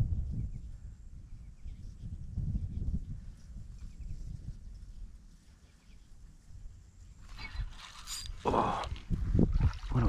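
Low rumble of wind on the microphone. Then, from about seven seconds in, a fish splashes and thrashes at the surface of shallow water as it strikes the bait.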